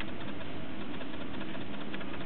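Steady room noise: an even hiss with a low hum underneath, unchanging throughout.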